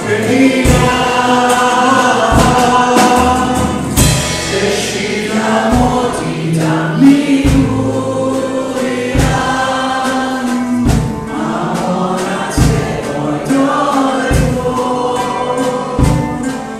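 A live worship band: male and female voices singing a worship song together, over acoustic guitar and a bass line, with percussion strokes every second or two.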